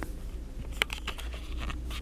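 Handling noise: a few short clicks and crinkles as the camera moves against plastic-wrapped toilet paper packs, the loudest just under a second in, over a low steady rumble.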